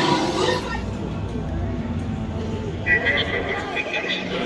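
Sullustan pilot's alien chatter from an animatronic, played over the shuttle ride's sound system, with a steady low rumble underneath and a few bright electronic tones near the end.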